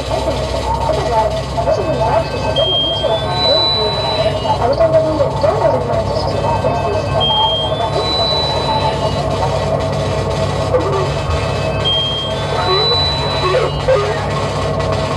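Live electronic music played from a laptop and mixer: a low steady drone under a dense layer of warbling mid-range sounds, with a two-note high electronic tone, lower then higher, coming back about every four and a half seconds.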